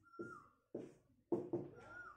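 Marker writing on a whiteboard: four sharp taps as the strokes hit the board, each fading quickly, and two short high squeaks of the marker tip, one at the start and one near the end.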